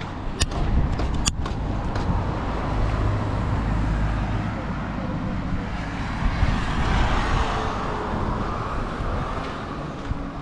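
Road traffic: a motor vehicle running close by over a steady low rumble, with a swell of engine and tyre noise around seven seconds in as a vehicle passes.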